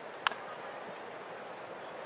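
A single sharp crack of a bat hitting a pitched baseball, which is fouled off, over steady ballpark crowd noise.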